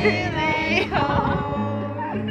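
A group of children singing a song together to a strummed acoustic guitar. The voices hold a long note, and a sustained guitar chord rings near the end.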